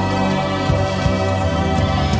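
Country gospel music playing from an album digitized from cassette tape, with steady sustained chords.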